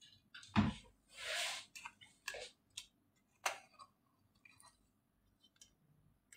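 Scattered handling noises in a kitchen: a low thump about half a second in, a brief rustle, then a few sharp clicks and light knocks, fading to near quiet in the last two seconds.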